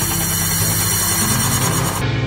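Electronic music: a dense droning synth texture, with a hiss-like wash on top and steady low bass tones pulsing underneath.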